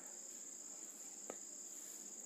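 Faint, steady, high-pitched insect trill, with one faint click about a second and a quarter in.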